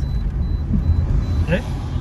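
Steady low rumble of a car's engine and tyres heard from inside the cabin while driving along a city street, with a man's brief "eh?" near the end.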